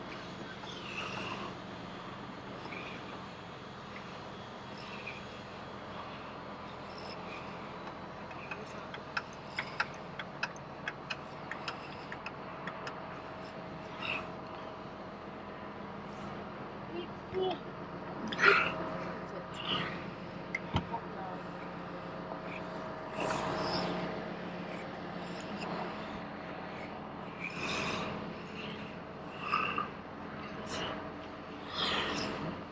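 The engine of the vehicle towing the boat trailer runs steadily at low speed, a constant hum. Indistinct voices call out now and then, and a quick run of light clicks comes about a third of the way in.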